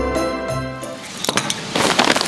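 Christmas background music with jingle bells stops about a second in. Then comes a rapid crackling of gift-wrapping paper being pressed and folded around a parcel.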